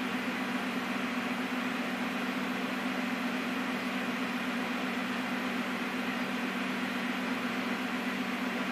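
Small LED pocket projector's cooling fan running: a steady hiss with a low hum underneath.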